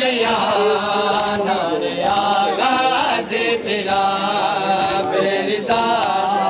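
Men's voices chanting a mourning lament (noha) for matam, a loud continuous sung chant with several voices together.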